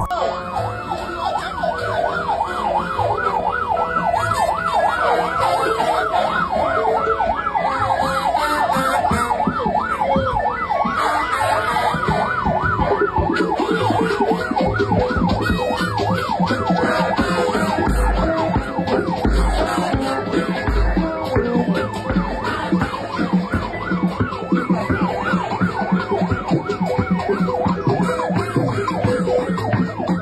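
Vehicle sirens sounding a fast, rapidly cycling yelp, with more than one siren overlapping and a lower-pitched one prominent from about halfway through. A few short low thumps come shortly after the middle.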